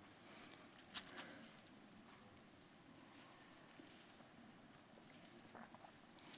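Near silence, broken by faint rustling and a soft click about a second in, with a few more light clicks near the end: pages of a Bible being turned at the pulpit.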